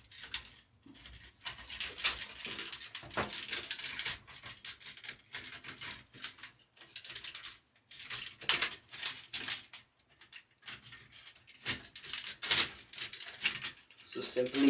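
Hard plastic parts of a Transformers Studio Series Devastator figure and its DNA Design DK-20 upgrade-kit head clicking, scraping and rattling as they are handled and pressed together. The clicks come irregularly, with louder clusters about two-thirds of the way through and near the end.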